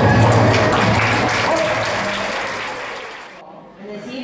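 Audience applauding with some voices as a folk-dance tune ends; the music's low notes fade in the first two seconds and the clapping dies away near the end.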